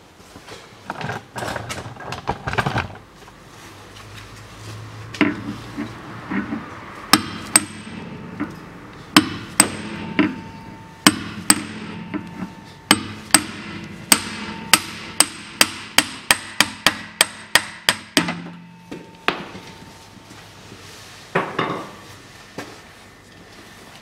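Hammer blows knocking the worn rubber-metal trailing-arm bushing out of the rear knuckle of a Toyota Camry XV40: a long run of sharp metallic strikes, about two to three a second, some with a short ring, with a few scattered knocks before and after.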